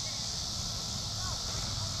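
Outdoor field ambience: a steady low wind rumble on the microphone and a constant high hiss, with faint distant shouting voices.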